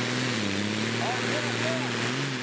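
Modified pulling tractor's engine running flat out under load as it drags a weight-transfer sled down the pulling track: a loud, steady drone with a dense hiss over it, its pitch wavering slightly.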